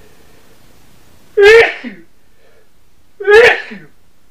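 A man sneezes twice, loudly, about two seconds apart.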